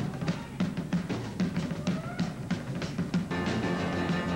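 Ragtime on an upright piano with a dance band's drum kit: sharp, spaced-out hits and a few rising slides through the first three seconds. Then sustained band notes fill back in.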